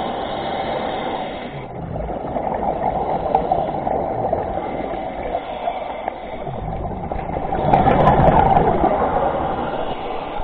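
Muffled underwater noise of scuba breathing heard through a camera housing: exhaled regulator bubbles gurgling and rushing, with a louder surge of bubbles near the end.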